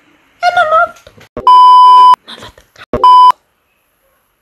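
Censor bleep: a loud, steady high beep tone laid over speech, twice, once for most of a second about 1.5 s in and again briefly about 3 s in, blanking out words.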